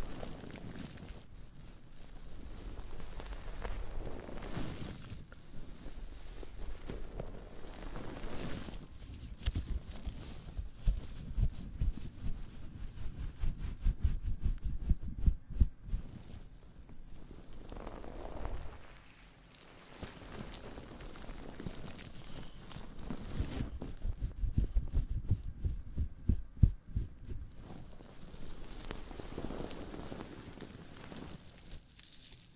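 A lathered, foamy sponge squeezed and rubbed directly against a microphone, making close wet squishing and crackling with dense little pops. The crackling thickens in two busier stretches, around the middle and again a few seconds before the end, with a short lull in between.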